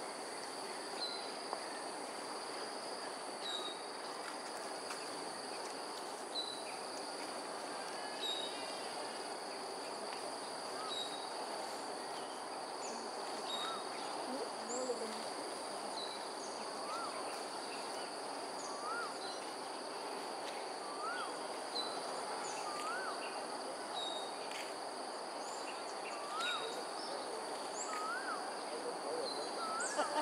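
Birds calling: a short high chirp repeated about once a second for the first ten seconds or so. From about 13 s on, another bird gives single rising-and-falling whistled notes every couple of seconds, each a little higher than the last. Two steady high-pitched tones run underneath the whole time.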